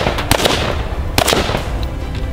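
Shots from a BCM AR-15-pattern carbine fired in quick pairs: two sharp reports near the start and two more about a second in, each trailing off in an echo.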